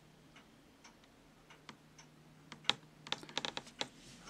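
A comic book in a plastic sleeve being handled and stood upright: scattered light plastic clicks and taps, a sharper one about two-thirds in, and a quick flurry of them near the end.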